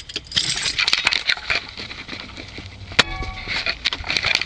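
Light rattling, rustling and small clicks, with a sharp click about three seconds in followed by a brief ringing tone.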